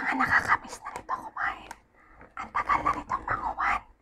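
A woman speaking in a soft whisper, with a short pause about halfway through.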